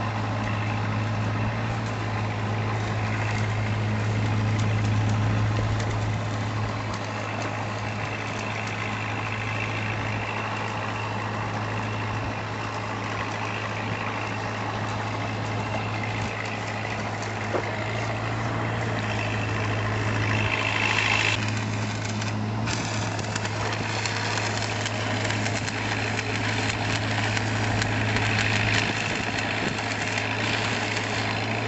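An engine running steadily at idle, with a constant low hum.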